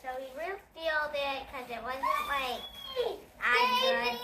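A young child's voice making drawn-out sounds that glide up and down in pitch, with no clear words.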